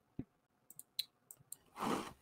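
Faint, scattered small clicks, about seven in two seconds, then a brief soft rustle near the end.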